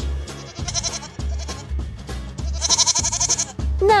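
Background music with a steady beat, over goat bleats: a short one near the start and one longer, louder bleat a little before the end.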